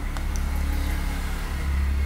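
A low, steady, engine-like rumble in the background, growing louder about one and a half seconds in.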